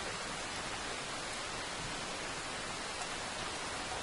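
Steady rainfall, an even hiss that does not change.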